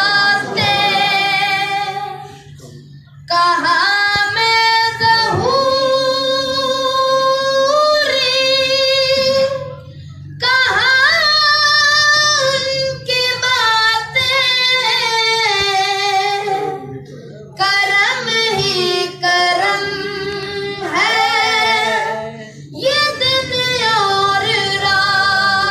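A single high voice sings an unaccompanied devotional naat, holding long, ornamented notes with vibrato in phrases broken by brief pauses for breath.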